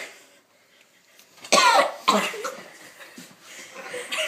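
Coughing and spluttering on a mouthful of dry ground cinnamon. After a moment's quiet, a harsh cough comes about one and a half seconds in, then another half a second later, then smaller coughs that trail off. The dry powder is catching in the throat.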